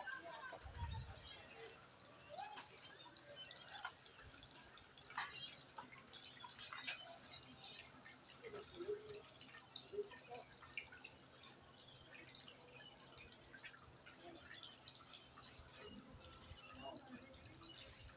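Very faint dripping and trickling water from a small stream, with scattered small clicks throughout.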